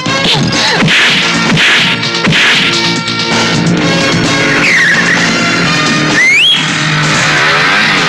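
Action-film soundtrack: dramatic background music with motorcycle engine and skidding sound effects mixed over it. A short, high squeal rises about six seconds in.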